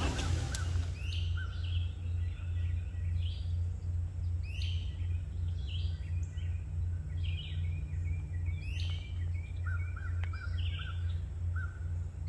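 Wild birds singing, one phrase of falling whistled notes repeated about every two seconds, with a quick run of short notes near the end, over a steady low hum.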